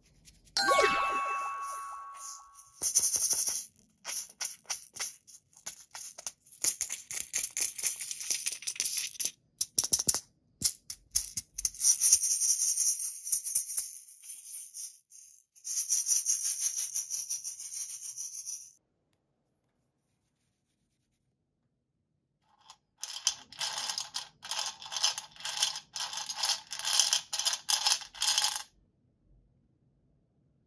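Hands squeezing and handling squishy toys and plastic pieces close to the microphone: runs of crackly, crinkly rustling, with a chime about half a second in. The rustling stops for a few seconds after the middle, then returns as quick, regular scratchy strokes.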